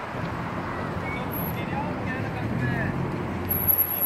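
City street ambience: steady road traffic, with the rumble of a vehicle swelling past about a second or two in, and scattered voices of people around.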